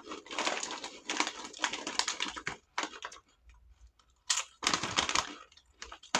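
A plastic bag of kettle-cooked chips crinkling and rustling as it is handled, in fast crackly bursts with a short pause in the middle and a sharp rustle after it.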